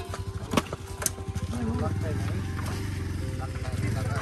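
Motorbike engine running steadily, with people talking over it.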